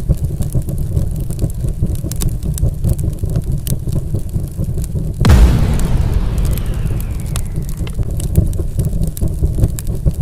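Cinematic logo-intro sound effects: a low rumble with crackling fire, then a big explosion hit about five seconds in, with a falling whoosh trailing after it.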